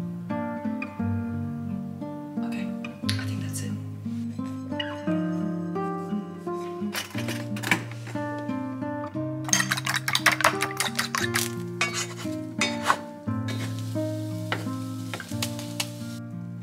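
Background music throughout. A rapid run of sharp kitchen clinks and clatter rises over it about halfway through, with a few more clinks near the end.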